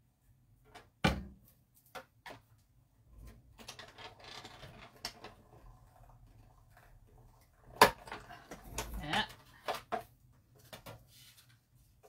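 Craft tools and cardstock being handled: scattered sharp clicks and knocks, the loudest about eight seconds in, with soft rustling and scraping between.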